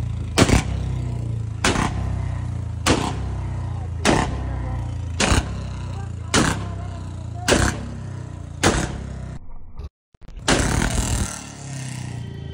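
Royal Enfield Bullet single-cylinder motorcycle running through a loud modified exhaust, firing a sharp backfire bang about once a second, eight times in a row. After a brief break near the end comes a denser, louder burst of exhaust noise.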